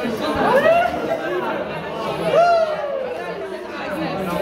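Several voices praying aloud over one another, no words clear. Two louder drawn-out calls stand out, about half a second in and again just past two seconds, each rising in pitch and then sliding down.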